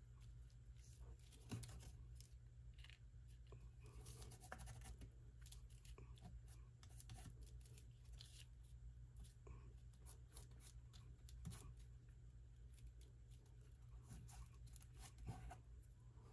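Near silence with faint scattered rustles and light scratches of fingertips rubbing and pressing on paper tags and die-cut paper gears, over a low steady hum.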